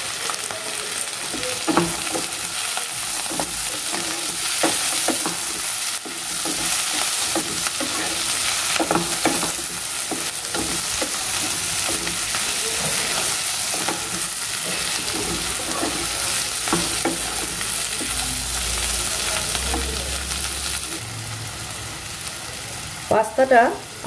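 Chopped vegetables sizzling in hot oil in a nonstick kadai, stirred and tossed with a wooden spatula that scrapes and knocks against the pan. The sizzle thins out near the end.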